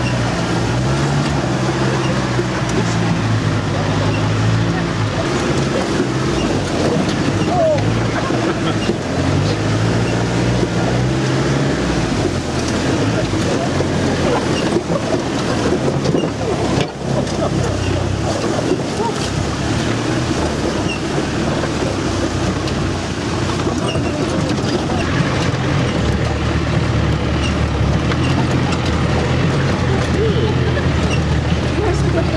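A 4x4's engine running under load, heard from inside the cab as it drives over a rough muddy track. Its pitch steps up and down as the revs change.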